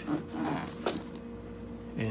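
Metal zipper pulls on a Veto Pro Pac MC tool bag clinking as the zipper is handled, with a couple of short clicks.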